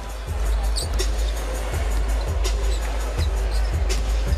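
Arena ambience of steady crowd noise with music playing, under a basketball being dribbled up the court: a series of low bounces on the hardwood floor.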